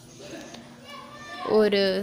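A pause in a woman's narration, filled by faint distant voices, before her speech resumes near the end.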